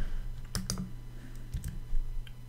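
Typing on a computer keyboard: a handful of separate key clicks, in a pair just over half a second in and another near the end.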